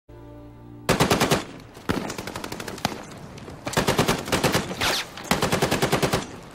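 Machine-gun fire in repeated short bursts of rapid shots, about a dozen a second, starting about a second in after a low steady hum.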